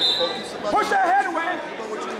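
Raised voices calling out in a large gym hall, loudest about a second in, over a steady murmur of background chatter.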